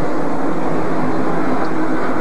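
Steady drone of NASCAR Winston Cup stock-car V8 engines running during pit stops, an even noise with a low held tone and no change in pitch.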